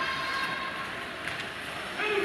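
Steady background noise of an ice hockey arena during play: a continuous hum with faint steady tones running under it.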